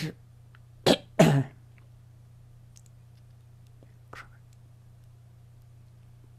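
A person clearing their throat: a short sharp burst about a second in, followed at once by a longer one. A faint brief sound comes about three seconds later, over a steady low hum.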